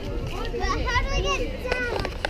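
Children's voices chattering and calling, several high voices overlapping.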